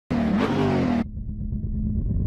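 A car engine revving sound effect for about a second, with its pitch rising. It cuts off abruptly into a low, steady rumble.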